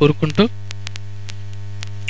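Steady electrical mains hum in the microphone and sound system, a low buzz with many overtones. It is left on its own once a man's voice stops about half a second in.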